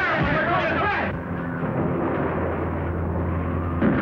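Indistinct shouting voices for about a second, then a steady low drone, then a sudden loud crash near the end as the airship's metal frame breaks up.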